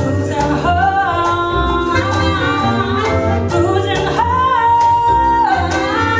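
A small live jazz band of saxophones, bass clarinet, vibraphone, bass and percussion playing a Latin-tinged tune over a steady low pulse. A high lead line slides between notes and holds one long note for about a second, from about four seconds in.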